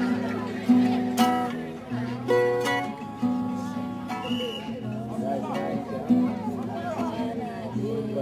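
Acoustic guitar being strummed, chords ringing on with a fresh strum every half second to a second, while people talk over it.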